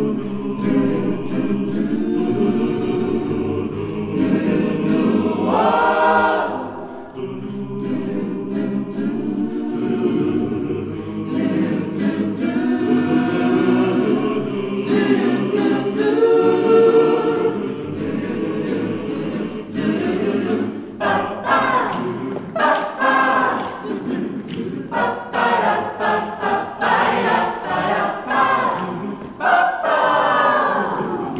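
Mixed chamber choir singing a cappella in close harmony, with crisp consonant clicks over sustained chords. About two-thirds of the way through, the singing breaks into short, rhythmic detached syllables.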